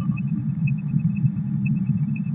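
A steady low hum, with a faint thin high tone above it.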